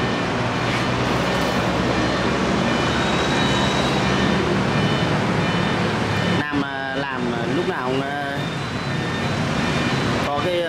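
Steady engine-and-road noise of passing traffic, which falls away about two-thirds of the way in, followed by a few seconds of a person's voice.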